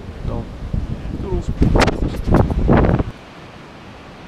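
Wind buffeting the camera microphone: a low rumble with several sharp gusts. About three seconds in it cuts off to a quieter, steady wash of wind and surf.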